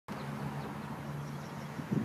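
Quiet outdoor background noise with a steady low hum, with a short bump just before the end.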